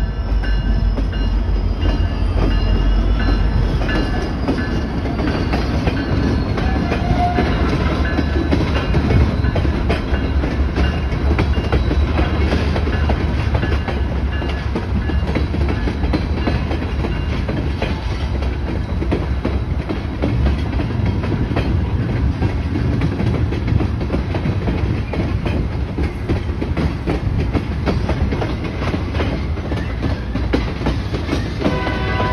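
A slow BNSF freight train of diesel locomotives hauling tank cars passes close by, a steady low rumble with a continuous run of rapid wheel clicks.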